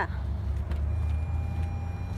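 Steady low rumble of a vehicle idling close by, with a faint steady electronic tone that comes in about a second in.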